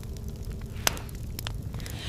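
Campfire crackling, with scattered sharp pops, one louder near the middle, over a steady low rumble.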